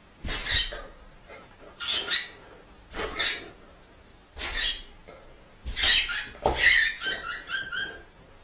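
Great Dane barking in a slow series of about six sharp barks, roughly one every second and a quarter. The last bark runs into a quick run of short chirps near the end.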